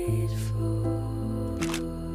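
Soft background music of held chords over a low bass note that changes about a second and a half in, with two brief click-like sounds, one early and one just before the bass change.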